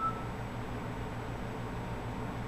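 Steady low hum with a light hiss, room background noise with no distinct event, and a faint brief high tone right at the start.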